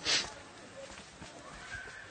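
A brief, sharp rustling scrape at the very start, then faint distant voices over quiet outdoor background.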